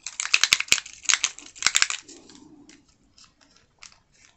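Small plastic alcohol ink bottles handled on a craft mat: a quick run of clicks and rustles in the first two seconds, then a few faint ticks as a bottle's cap is twisted off.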